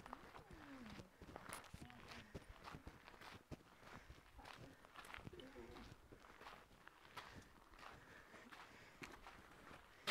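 Quiet footsteps with small scattered knocks and shuffles, and faint voices now and then.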